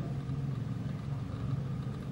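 A steady low hum, level and unchanging.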